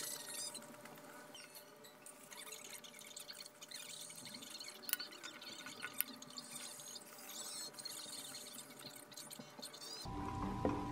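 Metal spoon scooping moist risotto and scraping a ceramic plate, with soft wet eating sounds, and two sharper clinks of spoon on plate about five and six seconds in.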